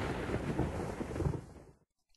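Thunder sound effect: a rumbling thunderclap dying away, gone just before the end.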